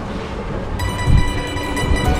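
Low rumbling street noise, with background music coming in about a second in and holding steady tones.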